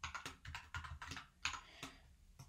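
Typing on a computer keyboard: a quick, uneven run of keystrokes, about a dozen in two seconds.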